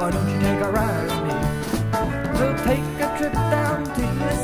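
Instrumental passage of a 1970s band recording: a bass line and regular drum hits under a lead instrument playing a melody of sliding, bending notes, with no singing.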